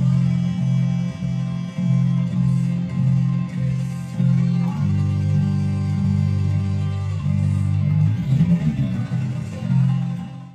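Electric bass guitar (a G&L) played over the song's recording with the band underneath: low repeated notes about twice a second, then longer held notes from about five seconds in, and a busier run of notes near the end.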